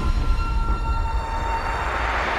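Cinematic sound design under an animated title: a deep rumble with a few held high tones that fade away, while a hiss swells through the second half, building toward a hit.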